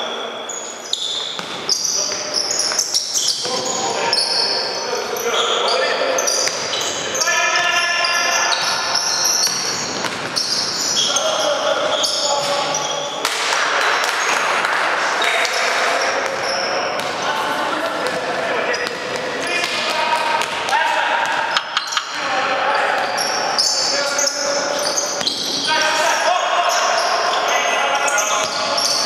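Live basketball play in a large gym hall: the ball bouncing on the court, sneakers squeaking, and players calling out, all echoing in the hall.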